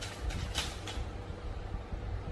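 Tarot cards being shuffled and handled to draw a clarifier card: brief papery rustles about half a second in, over a steady low rumble.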